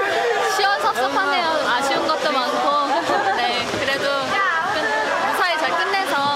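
People talking and chattering over one another.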